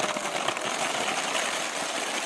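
Plastic ping pong balls pouring in a stream from a tub into a plastic mesh laundry basket, many bouncing out onto a ground sheet: a dense, continuous clatter of small plastic clicks.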